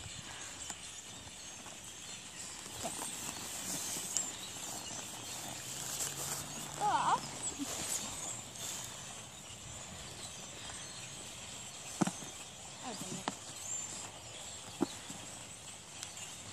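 Faint voices over quiet outdoor background noise, with a short high vocal exclamation about seven seconds in and a few sharp clicks later on.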